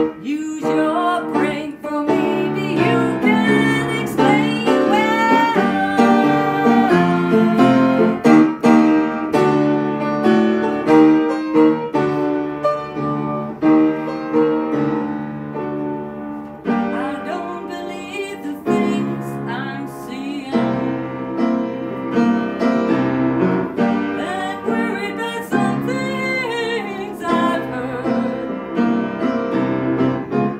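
Upright piano playing an instrumental passage of a song, with a sliding, wavering melody line over it at times.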